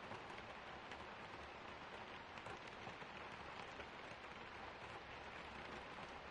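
Steady, faint rain: an even hiss of rainfall with many small drop ticks scattered through it.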